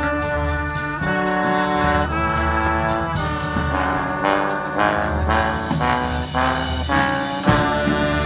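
Street brass band playing: trombones, trumpets and saxophones sound held chords that change about once a second, with shorter notes in the middle, over a low repeating beat. One sharp drum-like hit comes near the end.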